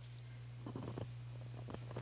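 Quiet room tone with a steady low hum and a few faint soft sounds around the middle.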